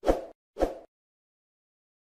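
Two short plop sound effects about half a second apart, from an animated subscribe-button graphic, then silence.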